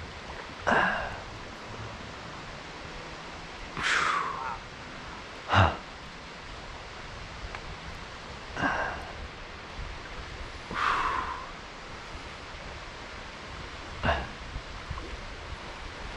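Steady rush of flowing river water, broken by six short, breathy gasps and exhalations from a man catching his breath, spaced a few seconds apart; two of them fall in pitch like sighs.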